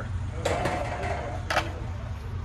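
Two light metallic knocks about a second apart as a small brake-lathe centering cone is handled and picked up, over a steady low shop hum.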